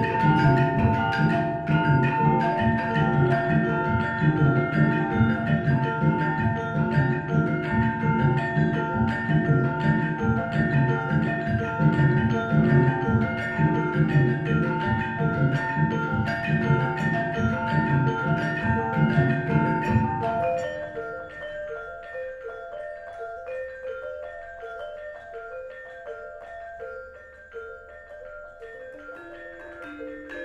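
Gamelan ensemble playing: bronze kettle gongs (bonang) and metallophones struck in dense, fast repeating patterns, ringing over one another. About twenty seconds in the low, heavy part drops out suddenly, leaving a quieter, higher line of struck bronze tones.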